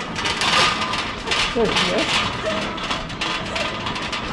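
Metal flatbed trolley loaded with plywood boards rolling over a concrete floor, rattling and clattering steadily, with a short spoken word about one and a half seconds in.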